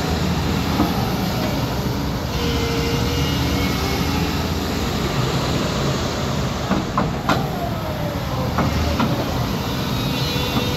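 Caterpillar 323D hydraulic excavator running, its diesel engine and hydraulics working steadily as the upper structure swings and the boom lifts. Several sharp metal clanks come in the second half.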